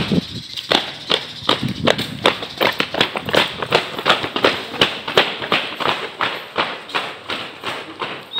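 Footsteps of a group of people jogging together on concrete, a quick, even patter of steps.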